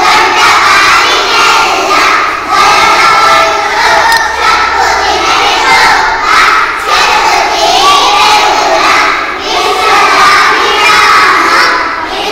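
A large group of young children loudly reciting Telugu verses in unison, chanting the lines together in phrases with short breaks between them.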